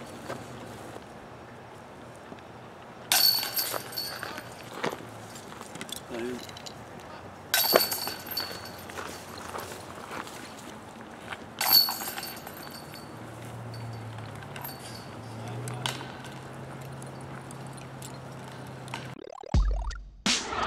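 Disc golf putts hitting the hanging chains of a metal basket three times, a few seconds apart, each a sharp metallic jangle of chains with a short ringing tail as the disc drops in.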